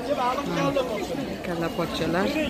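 Several people talking at once, indistinct chatter of vendors and shoppers in a food market hall.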